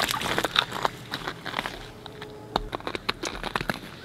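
Irregular crunching and crackling clicks from someone shifting on snow-covered pond ice.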